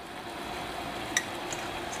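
Pan of water with artichokes at a rolling boil on a gas burner: a steady hiss, with one light click about a second in.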